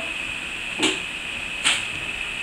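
Steady hiss of room and recorder noise with two brief soft scuffs a little under a second apart, from sneakers on a tile floor as a child drops into a side lunge.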